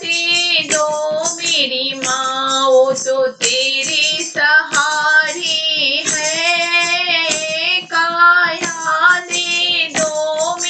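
A high voice singing a Hindi Mata Rani devotional bhajan in long, wavering held notes, with light musical accompaniment.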